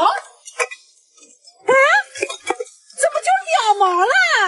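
A woman talking in Mandarin, with a short pause about a second in, then speaking again until the end.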